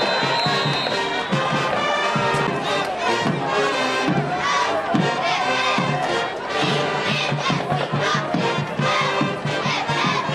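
Football crowd in the stands shouting and cheering steadily through a play, with music underneath.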